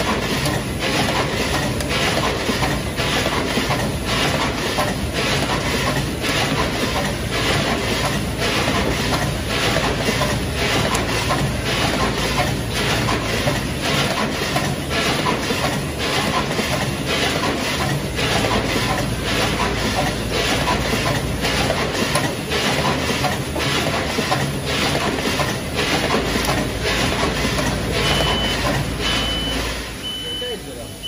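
Rotary tray sealing machine running, its indexing turntable and pneumatic stations clacking in a quick, even rhythm over steady mechanical noise. Near the end a high electronic beep starts, sounding on and off.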